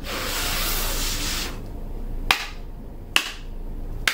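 A long breath blown onto a deck of oracle cards held at the mouth, a hissing exhale lasting about a second and a half. Then two short sharp clicks about a second apart as the deck is handled.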